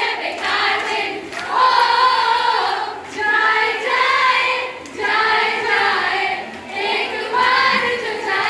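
A woman singing a song into a handheld microphone, amplified through a PA, in sung phrases of a second or two with short breaks between them.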